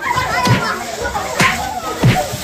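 A group of children shouting and yelling over one another during a staged scuffle, with two sharp slap-like hits about half a second and a second and a half in.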